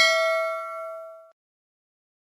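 Notification-bell ding sound effect: one bell stroke ringing on in several steady tones, fading out about a second and a quarter in.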